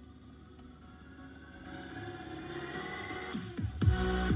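Electronic outro music building up, growing louder with a rising sweep, then dropping into a heavy, regular beat near the end.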